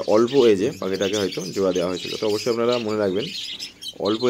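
Pet budgerigars chirping in high, scattered notes behind a man's steady talking.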